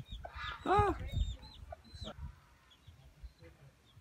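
A chicken clucking a few times in the first second or so, with small birds chirping high and faint.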